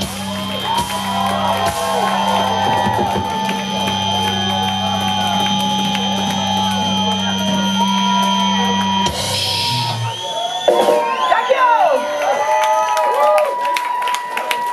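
A live metal band's final chord ringing out through the amplifiers with steady sustained tones, under a cheering, shouting and whistling crowd. About nine seconds in a crash ends the ringing chord, and crowd shouts and whistles go on over one lingering steady tone.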